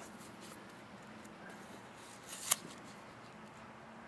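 A single short, sharp snick about two and a half seconds in: a folding knife's plain-edge blade slicing through paracord in one clean pass.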